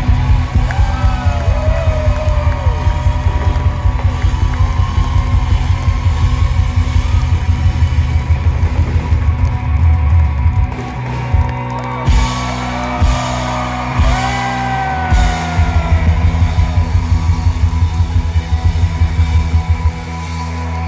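Live rock band playing an instrumental passage on electric guitars, bass and drum kit, with a fast driving beat. The beat thins out for a few seconds in the middle before the full band comes back in.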